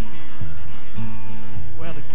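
Bluegrass band playing an instrumental passage between sung verses: a steady run of bass notes under plucked strings, with a sliding high line coming in near the end.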